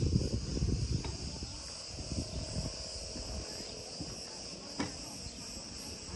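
Cicadas buzzing steadily in a high, unbroken drone. Under it is a low rumble, loudest in the first second, and a few faint clicks.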